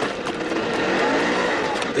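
Small pickup truck's engine running and being revved hard as the driver tries to pull away.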